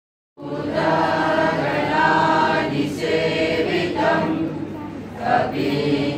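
Mixed choir of men and women singing a Sanskrit prayer to Ganesha together in unison, starting about half a second in and running in long sung phrases.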